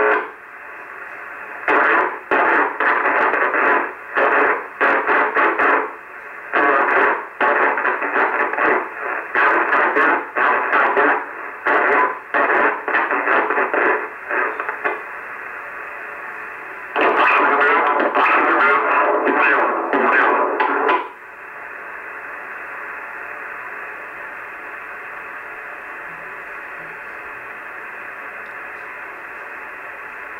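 Sears Road Talker 40 CB radio's speaker playing received transmissions, thin and narrow in sound, in bursts that cut in and out with short gaps for about the first two-thirds. Then, a little after 20 seconds, they stop and only steady receiver static hiss remains.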